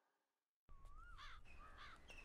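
Dead silence for the first half-second or so, then faint birds calling: short whistled notes that rise and fall, a few in quick succession, over a low background hiss.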